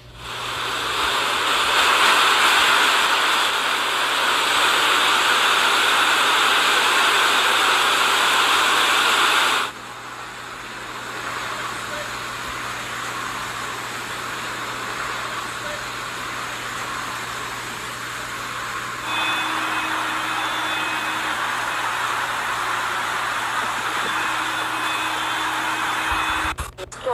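Steady rushing noise of rain and floodwater as cars drive through flooded streets. The sound drops abruptly about ten seconds in and rises a little again near twenty seconds, where faint steady tones join it.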